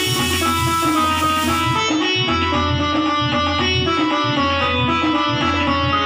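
Casio electronic keyboard being played: a melody of steady pitched notes over a continuous accompaniment with a repeating bass and percussion rhythm.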